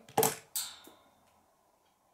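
Small plastic LEGO minigun firing a shot: two sharp plastic clicks about a third of a second apart, the second trailing off over about half a second.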